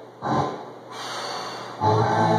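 A short, sharp breath from a weightlifter bracing under a loaded barbell in the rack, heard over quieter background music.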